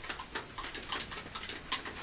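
Fairly faint, rapid and irregular clicking of the buttons on handheld video-game controllers being played.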